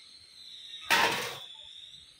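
An aluminium Coca-Cola can clatters once onto the stone floor about a second in, dying away within half a second, over a faint steady high tone.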